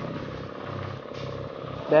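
A steady low mechanical hum, engine-like, with a faint noise bed behind it.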